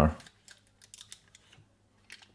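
A few faint, short clicks and ticks of hands handling a plastic filament splicer's clamp and the paper wrapped around the filament.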